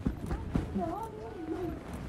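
A person's wordless voice, rising and falling in pitch, with a few short knocks near the start.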